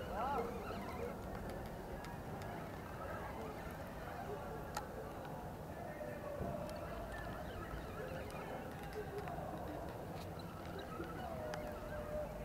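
Steady outdoor background with faint, indistinct voices and a few light clicks.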